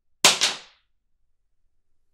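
A plastic toothbrush dropped onto a sheet of paper on a table, landing with two quick clacks a fraction of a second apart.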